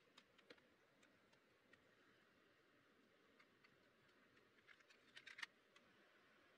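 Near silence with faint plastic clicks: a car glove box latch clicking open at the start, then a quick cluster of clicks from a plastic cassette tape case being handled about five seconds in.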